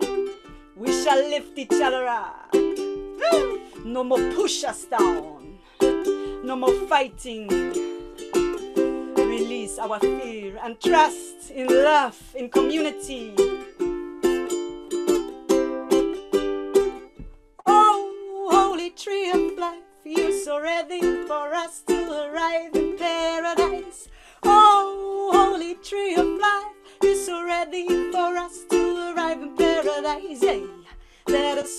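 A ukulele strummed in a steady rhythm of chords while a woman sings the melody over it.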